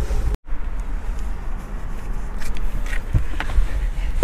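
Low rumble on the microphone with a few scattered clicks and knocks, broken by a brief dropout about half a second in.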